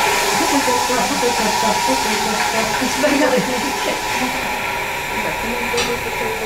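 Dump truck's engine running with a steady loud hiss as its tipper bed is raised, and a crowd's voices underneath.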